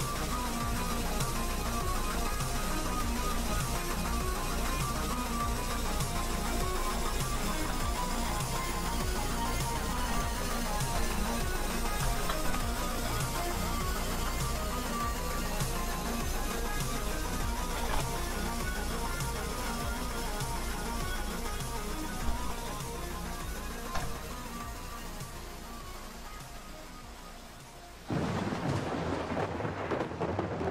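Background music plays steadily and fades down over the last few seconds. About two seconds before the end it cuts suddenly to a noisier, rumbling sound.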